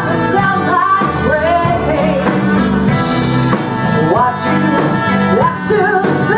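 Live blues band playing a song, with a woman singing lead in long, sliding phrases over the band.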